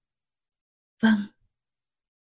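A single soft spoken word, 'vâng' ('yes'), about a second in, with dead silence before and after it.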